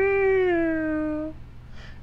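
A man's voice singing one long held note with no words, which stops about a second and a quarter in.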